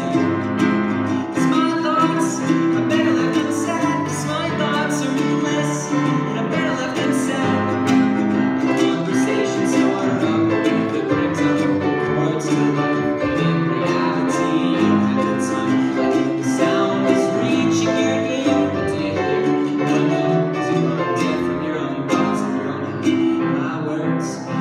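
A grand piano and an acoustic guitar playing a song together, with a man singing over them.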